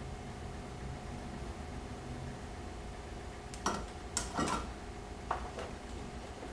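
Steady low hum of room tone. Just past the middle, a few short clicks and rattles as a soldering iron is set back in its coiled metal stand and harness wires are handled.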